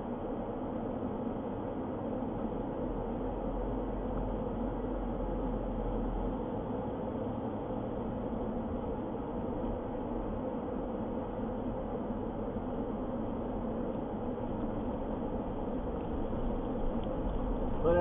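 Steady driving noise of a car heard from inside the cabin, an even engine and tyre hum with no sudden events.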